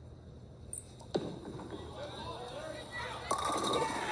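Tenpin bowling ball crashing into the pins for a strike: a sharp crash about a second in. Near the end a crowd cheers and the bowler yells, all heard through a television's speaker.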